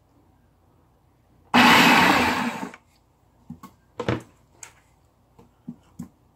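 Countertop electric blender blending tomatoes in one short burst of a little over a second, its sound dying away as the motor stops. A few light knocks and clicks follow.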